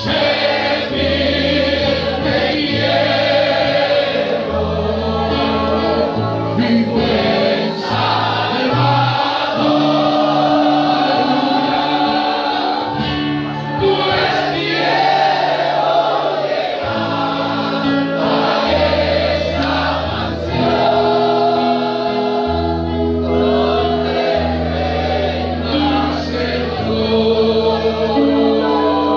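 A congregation singing a worship hymn together over instrumental accompaniment, with sustained bass notes that step to a new pitch every second or two beneath the voices.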